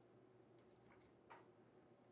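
Near silence with a few faint computer keyboard keystrokes clustered from about half a second to just over a second in, over a faint steady hum.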